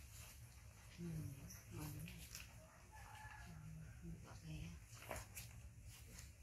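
A few soft, short, low vocal sounds in two small clusters, one about a second in and one a little past the middle, with brief papery rustles from a picture book's pages being handled.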